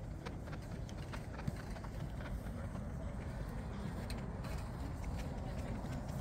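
Faint, scattered footsteps on an artificial-turf field over a low, steady rumble, with one slightly louder knock about one and a half seconds in and faint distant voices.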